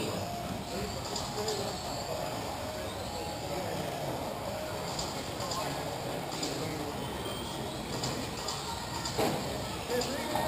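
Battery-powered electric RC on-road racing cars lapping a track: the high whine of their motors rises and falls as they pass, over a steady background noise, with a few short sharp clicks about halfway through and near the end.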